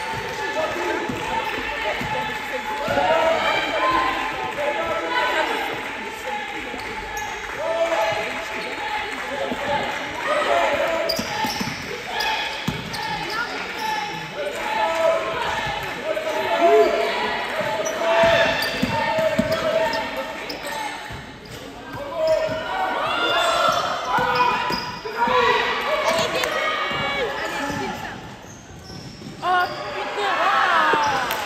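Basketball game play in a large gym: a ball bouncing on the court floor, sneakers squeaking and players' voices calling out, all echoing in the hall.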